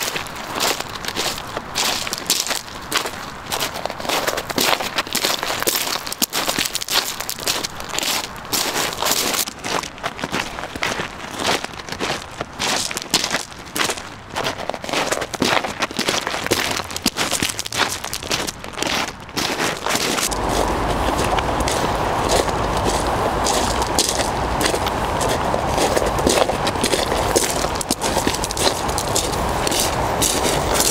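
Footsteps crunching on loose pebbles and gravel with patches of snow, a steady walking pace of repeated crunches. About twenty seconds in, the crunching thickens into a steadier, denser noise with a low rumble underneath.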